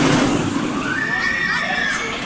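Dæmonen, a steel B&M floorless roller coaster, with its train rumbling past overhead, loudest at the start. Riders give a long, high scream in the second half.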